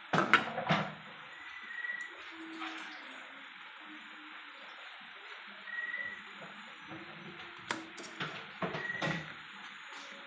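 Metal spatula scraping and knocking against a frying pan while stirring fish in sauce, loudest in the first second, with more scrapes in the second half, over a faint steady frying sizzle.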